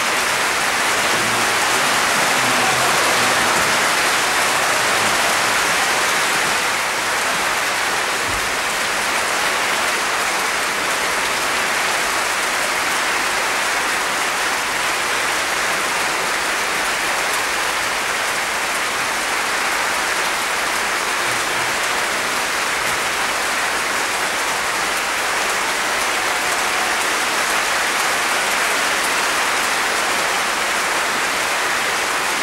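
A concert hall audience applauding: dense, even clapping throughout, slightly louder in the first few seconds.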